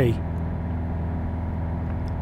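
Piper PA-28-180's four-cylinder Lycoming engine and propeller running steadily in a climb, heard inside the cockpit as an even drone.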